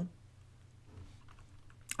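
A few faint computer keyboard key clicks in the second half, over a low steady hum.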